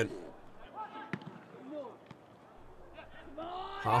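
A single sharp thud of a football being kicked, about a second in, over faint distant voices from the pitch.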